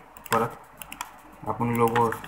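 Light, scattered clicks of a computer keyboard and mouse, with a man's voice speaking briefly twice over them.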